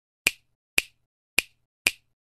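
Four sharp finger snaps, evenly spaced about half a second apart, each dying away at once. They are sound effects for an animated intro title.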